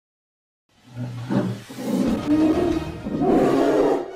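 After a short silence, a loud animal-roar sound effect begins a little under a second in and swells several times, with music mixed in.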